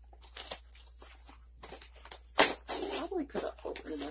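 Cardboard shipping box being handled and pulled open: scattered short scrapes and rustles of cardboard, with one loud, sharp noise a little over halfway through.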